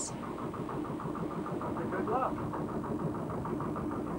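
Small fishing boat's engine running steadily at sea, with an even beat of about ten a second.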